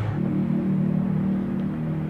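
A steady low engine hum holding a few low tones, starting just after the beginning.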